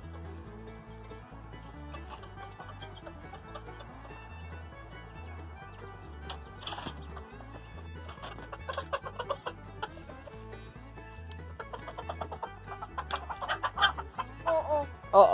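Chickens clucking in short bursts, about halfway through and again near the end, over background music with a steady low beat.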